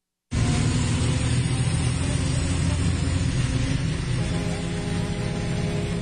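Loud, steady rumble of an extraurban bus's engine and road noise heard from inside the cabin on a phone recording, starting abruptly after a brief cut; a steady hum of several even tones joins about four seconds in.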